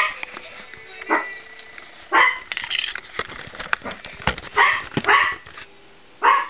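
Small poodle barking: a series of short, sharp barks spread over several seconds.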